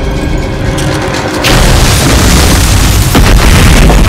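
Film sound design: a deep rumble under dramatic score, then about one and a half seconds in a sudden loud crash of smashing and falling debris that keeps going as a giant flesh monster bursts in, with a sharp crack near the end.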